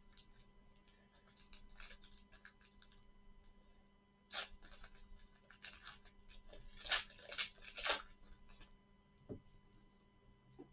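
Foil wrapper of a trading-card pack being crinkled and torn open by gloved hands: faint crinkling at first, then a few sharp rips in the second half.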